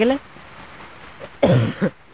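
A man coughs once, a short throat-clearing cough about one and a half seconds in, right after a word of speech.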